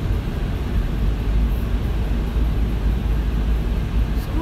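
Car cabin noise while driving through a road tunnel: a steady low rumble of engine and tyres on a wet road.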